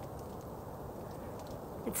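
Steady, faint open-air background noise with no distinct event; a word of speech begins at the very end.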